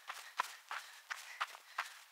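Hurried footsteps on a gravel path, about three steps a second.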